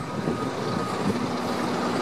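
Street traffic noise: a vehicle's engine running with a steady hum, growing slightly louder.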